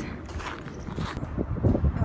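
Wind buffeting a phone microphone outdoors, an uneven low rumble with some hiss, with a few dull knocks in the second half, typical of footsteps or the phone being handled while walking.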